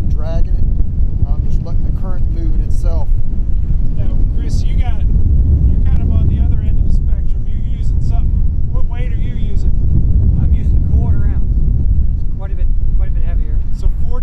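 Wind buffeting the microphone in a steady low rumble, with bits of indistinct talk over it.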